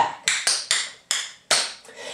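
Clogging shoe taps striking a hard floor as a dancer does a regular triple step backing up: a quick run of several sharp taps, stopping a little before the end.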